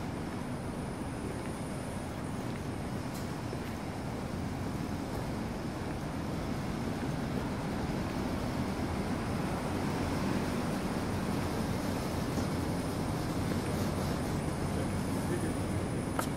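Steady low rumble of city street ambience, mostly traffic noise, growing slightly louder over the second half.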